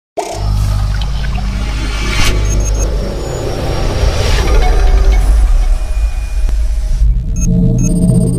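Cinematic logo-intro music and sound effects: a heavy low rumble with sweeping whooshes and a sharp hit about two seconds in, thinning near the end to a few high ringing tones.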